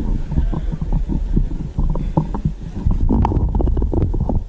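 Rumbling and knocking of a podium microphone being handled and adjusted, with a cluster of sharp clicks about three seconds in.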